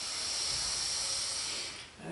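A long, deep breath drawn in through the nose, heard as a steady hiss that lasts nearly two seconds and stops near the end. It is the full inhale of a long-deep-breathing exercise, taken just before the breath is let out.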